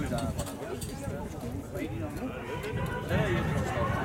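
Spectators chattering, several voices overlapping at a distance with no one voice standing out.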